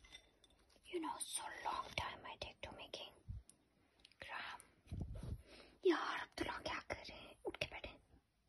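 Whispered speech in several short bursts, with a few faint clicks between them.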